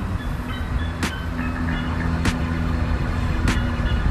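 Low, steady rumble of a motor vehicle engine running, with a held hum over it. A light tick comes about every 1.2 seconds.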